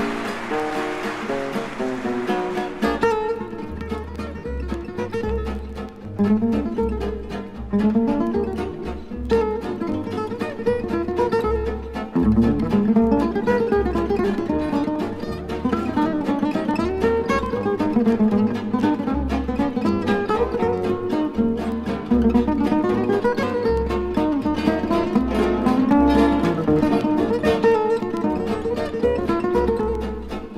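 Live Sinti swing waltz led by acoustic guitar, picking the melody over a rhythm accompaniment with a bass line beneath. Applause dies away in the first few seconds as the music comes in.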